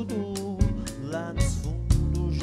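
A live band playing Brazilian funk and soul: electric guitar, electric bass and a drum kit with congas keeping a steady beat, with a male voice singing over it.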